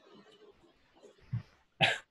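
A person coughs once, sharply, near the end, with a brief low throaty sound just before it.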